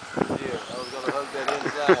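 People talking and laughing close by. A faint high whine from the electric radio-controlled touring cars lies behind the voices.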